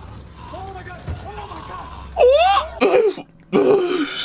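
A man's loud wordless exclamations of shock, with sweeping pitch, starting about halfway through and again near the end. Before them there are quieter voices over a low rumble, which stops shortly after the first exclamation.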